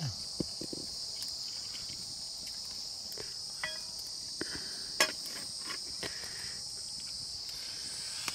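Steady high-pitched insect chorus, with scattered sharp clicks and knocks, the loudest about five seconds in, and a brief metallic ring about three and a half seconds in.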